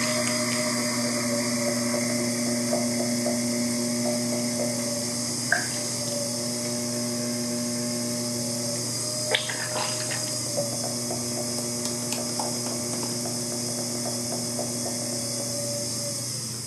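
Electric pottery wheel running with a steady motor whine while wet hands press and rub on clay being centered. There is a couple of brief sharp sounds in the middle.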